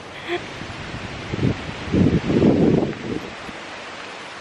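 Outdoor wind and rustling on a handheld microphone, with an irregular low rumble of buffeting that swells through the middle and then eases.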